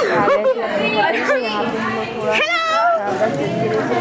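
Several people talking over one another in lively chatter, children's voices among them.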